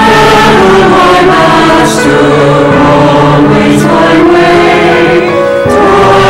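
Church choir singing together, many voices holding sustained chords that move to new notes every second or so, with a few crisp sung consonants.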